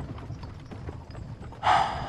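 Horse-drawn carriage on the move: horse hooves clip-clopping steadily over a low rumble of the carriage, heard from inside the carriage. A brief loud breathy burst of noise comes near the end.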